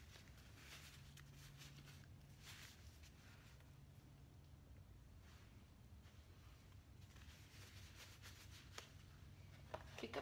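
Near silence: faint fabric rustling as padded work gloves are pulled on, over a low steady hum.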